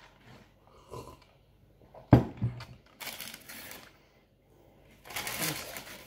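A sharp knock about two seconds in, like a mug set down on a table. Then paper wrapping rustles in two spells, the second near the end.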